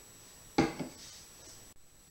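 A single sharp knock on a hard surface about half a second in, with a short ring after it, against faint room tone; the sound cuts out for a moment near the end.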